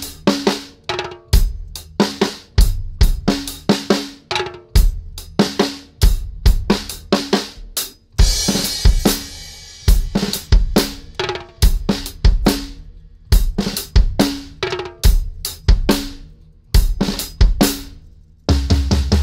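Acoustic drum kit played solo in a steady groove of kick drum, snare and hi-hat, with a sustained cymbal wash about eight seconds in.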